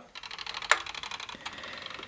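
Mechanical wind-up kitchen timer being cranked by turning the ping-pong paddle pulley fixed to its dial, giving a rapid run of small ratcheting clicks, with one louder click about a third of a second in.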